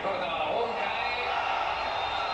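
Male television commentator talking over the football match broadcast, with a steady background haze beneath the voice.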